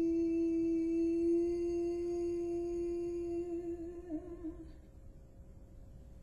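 A female jazz vocalist holding one long, soft sung note, unaccompanied. It wavers near the end and fades out about five seconds in.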